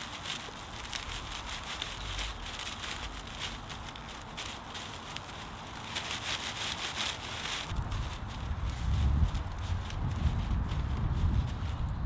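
Dry water reed thatch rustling and crackling as it is spread and pressed by hand onto a roof frame, a dense run of small crackles. A low rumble joins in the last few seconds.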